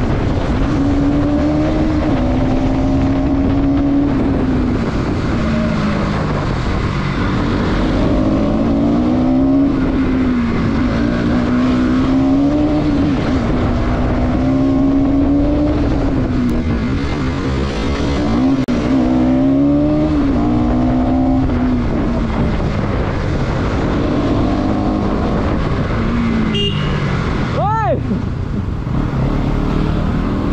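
Motorcycle engine heard from the rider's seat, its pitch rising and then dropping again and again as the bike accelerates through the gears and eases off in traffic, over a steady rush of wind noise.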